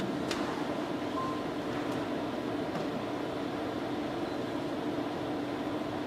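Steady room tone of a large hall, a low even hum such as ventilation, with one faint click near the start.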